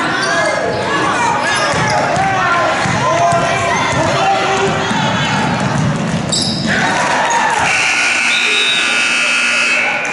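Basketball game sounds in a gym hall: voices of players and spectators with thuds and squeaks from the court. About three-quarters of the way through, a steady electronic buzzer starts and holds without a break, typical of a scoreboard horn stopping play.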